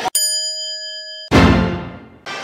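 Edited-in sound effects: a single bright bell-like ding that rings steadily for about a second, then a sudden heavier crash-like hit about halfway through that fades away.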